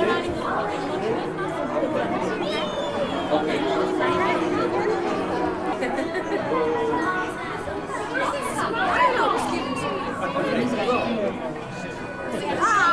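Many people talking at once, adults and children, a steady babble of overlapping voices with no single speaker clear.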